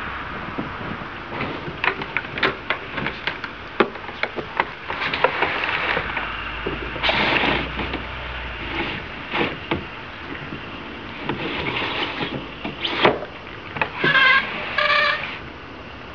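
A box truck drives past about six to eight seconds in, with a low rumble. Around it are scattered clicks and knocks, a sharp knock near the end, and then two short squeaks.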